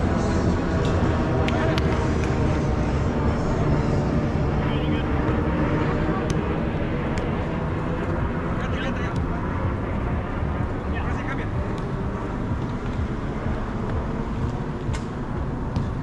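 Sound of a five-a-side soccer game on artificial turf: distant shouts of players and a handful of sharp thuds of the ball being kicked, over a steady low rumble.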